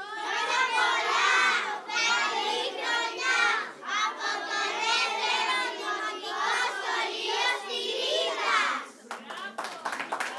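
A group of young children singing together in unison, the song ending about nine seconds in, followed by scattered hand claps.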